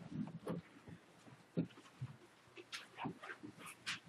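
Faint, scattered rustles and soft clicks of a man leafing through the pages of his Bible.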